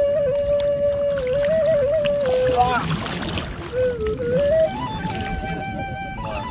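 Background music: a slow melody of long held single notes that step up and down, over the low rush of sea water and wind on the microphone. About halfway through, a brief noisy burst cuts across it.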